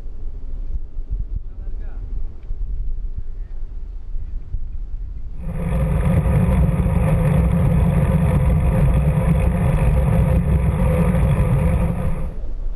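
Low outdoor rumble. About five seconds in, a loud, steady rushing noise starts suddenly: wind buffeting the microphone of a camera carried by a rider on the move.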